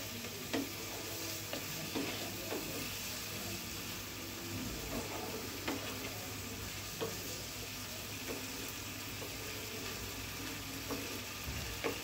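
Wooden spatula stirring and scraping a thick, oily dried-fish masala in a nonstick frying pan, the oil sizzling steadily underneath. Short knocks of the spatula against the pan come now and then. The masala is being fried down until the oil separates.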